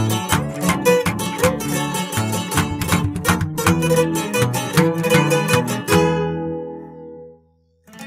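Instrumental ending of a corrido on plucked guitars: quick picked runs, then a final chord about six seconds in that rings and fades to silence near the end.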